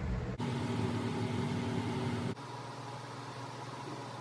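Steady machine hum with a low droning tone. It changes abruptly about half a second in and again just after two seconds, dropping a little in level at the second change.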